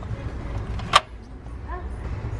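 Plastic makeup compacts handled in a plastic shelf display, with one sharp click about a second in as a compact knocks against the shelf or another compact, over a steady low background rumble.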